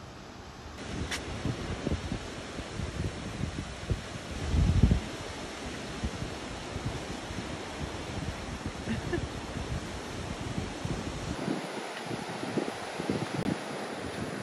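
Wind buffeting the microphone over a steady rush of ocean surf, with a stronger gust about five seconds in.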